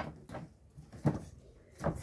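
Three or four short knocks and rustles as husked ears of corn and their husks are handled and set down in a plastic basket.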